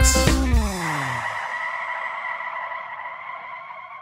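The song's backing music slows and slides down in pitch to a halt over about a second, as if braking, then a hiss with a faint steady ring fades away over the next few seconds.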